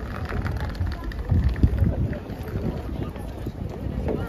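Wind buffeting the microphone in gusts, strongest between about one and two seconds in, over outdoor city ambience with passers-by talking.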